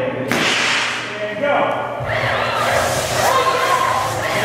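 Confetti cannons firing: a sudden rushing blast of air that fades over about a second, followed by loud shouting and whooping voices.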